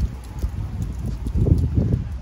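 Footsteps on a gravel driveway: irregular low thuds and rumble, heaviest a little past halfway.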